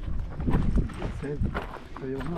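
Footsteps of several hikers on a loose, rocky dirt trail, a run of uneven steps, with a faint voice about a second in.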